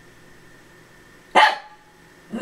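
One short, sharp bark from a small dog, about a second and a half in.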